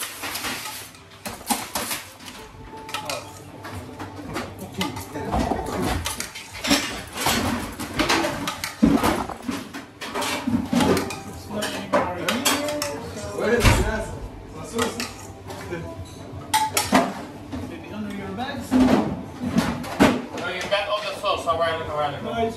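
Clinks and clatter of ladles, spoons and metal pans against ceramic bowls and a steel counter as food is plated in a busy kitchen, with people talking.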